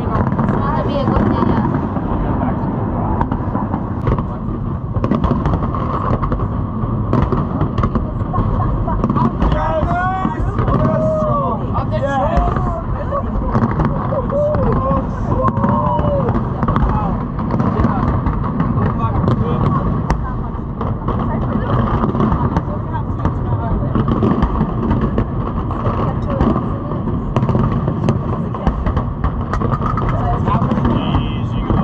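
Aerial fireworks going off in a continuous barrage of bangs and crackles over the chatter of a large crowd. Some voices call out about a third of the way in.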